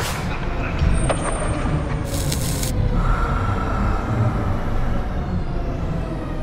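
A heavy vehicle's rumble, like a bus or truck, with a short air-brake-like hiss about two seconds in and a steady whistling tone from about three seconds on.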